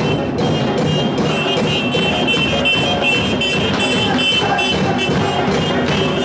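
Street percussion band of bass drums and snare drums playing a fast, steady rhythm, with a held high-pitched tone joining in about half a second in.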